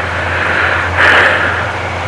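Steady low hum with a rushing noise over it that swells, loudest about a second in.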